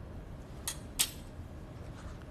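Two sharp metallic clinks about a third of a second apart: steel surgical instruments knocking against each other on the instrument tray.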